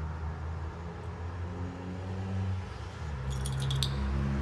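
A steady low mechanical hum and rumble, with a few low tones that change pitch now and then. A short clatter of small clicks comes near the end.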